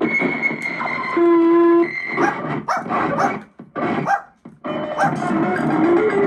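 Circuit-bent Casio SK-1 sampling keyboard played as a glitchy improvisation: choppy, stuttering electronic tones and noise, with a steady held note about a second in and two brief cut-outs around the middle.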